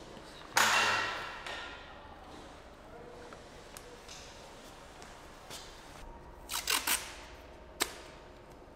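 Masking tape being pulled off its roll: a loud rip about half a second in that fades over a second, then a quick run of short rips and a sharp tear near the end as a strip is torn off.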